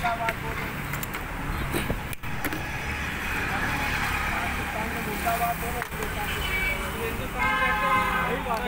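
Steady road-traffic noise from passing vehicles: engine rumble and tyre hiss, with men's voices faintly underneath.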